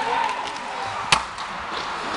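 Ice hockey puck struck: a single sharp crack about a second in, over the steady murmur of an arena crowd.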